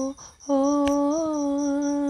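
A woman singing a held, wordless note in a worship song: the end of one note, a quick breath, then one long sustained note whose pitch lifts slightly about a second in.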